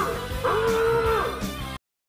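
A voice holding two long, slightly wavering notes in a sung, howl-like way, then cutting off abruptly near the end.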